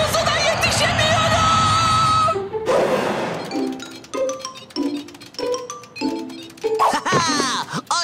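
Cartoon background music. A busy, bright passage cuts off about two and a half seconds in and gives way to a light tune of short, separate plucked notes, with a few falling glides near the end.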